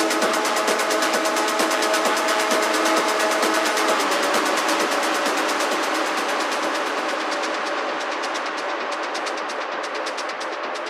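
Techno DJ mix in a breakdown without a low kick: fast, even percussion ticks over held synth tones that change about four seconds in. From about seven seconds in the high end is filtered away, and it opens up again at the end.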